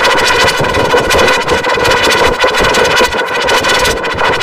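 Heavily distorted, effects-processed logo audio: a loud, dense buzzing drone with a rapid flutter and a steady pitch.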